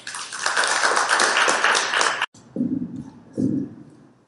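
Audience applauding, a dense patter of many hands that cuts off abruptly a little over two seconds in; a few low voices follow.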